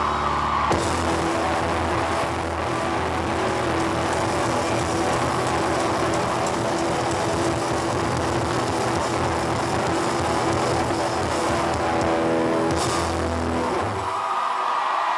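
Live rock band holding out the final chord of a song: electric guitar and bass sustaining a loud, steady, distorted drone, with a crash near the end.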